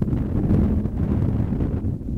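Wind rumbling on the microphone: a steady low rumble.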